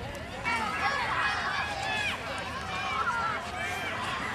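Several people chattering and talking in the background, with no single clear voice.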